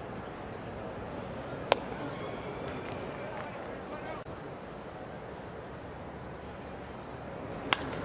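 Steady ballpark crowd ambience broken by two sharp cracks. The first, about two seconds in, is a fastball popping into the catcher's mitt. The second, near the end, is the bat hitting a slider.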